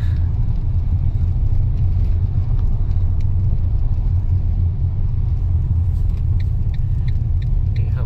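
Car driving slowly, heard from inside the cabin: a steady low rumble of engine and tyres on the street.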